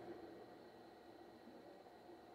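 Near silence: room tone with a faint steady high tone.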